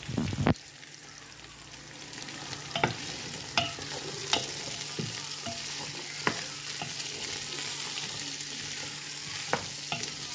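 Green beans dropping into a pan of zucchini, onion and garlic frying in olive oil, then sizzling as they are stirred with a wooden spatula. The sizzle builds over the first few seconds, with scattered clicks of the spatula against the pan.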